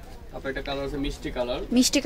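Quieter background speech: a person's voice talking, softer than the main narration.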